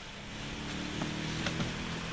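A low steady engine-like hum over background hiss, with two faint ticks.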